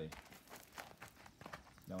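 A horse's hooves stepping on gravelly dirt as it walks under a rider: a run of faint, uneven footfalls.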